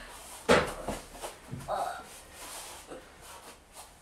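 Children shifting on a judo mat, with one sharp thump about half a second in, a few faint knocks after it and a brief child's voice.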